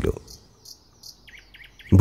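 Small birds chirping in a background ambience bed, with a quick run of short chirps about halfway through.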